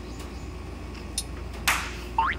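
A low steady hum with a faint click about a second in, then a short whoosh sound effect near the end that fades quickly.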